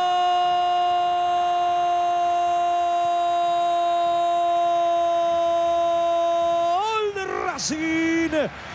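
A Spanish-language football commentator's drawn-out goal cry, 'gooool', held on one steady high note for about seven seconds and breaking off into shouted words near the end.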